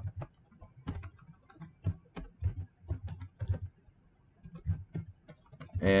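Typing on a computer keyboard: irregular keystrokes, with a short pause about four seconds in.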